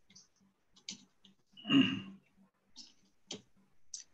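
Scattered, irregular clicks of a computer keyboard and mouse, picked up over a video call, with one brief louder sound a little before the middle.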